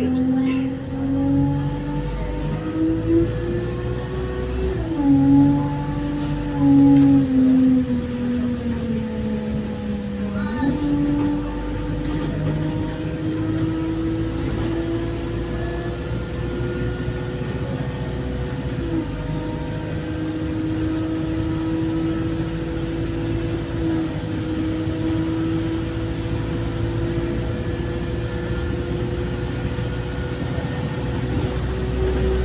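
Bus engine and transmission heard from inside the passenger saloon while driving. The pitch climbs as the bus accelerates and drops back at two gear changes, about four and ten seconds in, then settles into a steady drone that creeps slowly upward at cruising speed. A constant high whine runs underneath.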